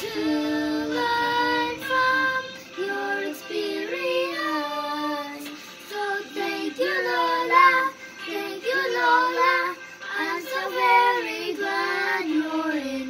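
A child singing a slow melody, holding some notes for about a second and more between short breaths.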